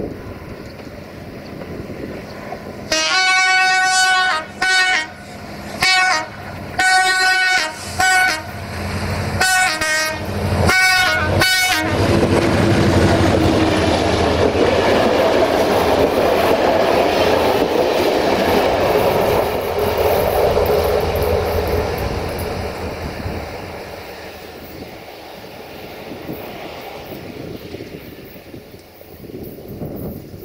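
Diesel-electric locomotive 64-1219-6 sounding its multi-tone horn in a string of long and short blasts. After that, the locomotive and its passenger coaches run loudly past close by, wheels on the rails, and the sound fades away over the last few seconds.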